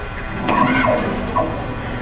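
Live rock band's amplified electric guitars and stage sound, loosely ringing between song parts. A short wavering, gliding sound comes about half a second in and trails off after a second.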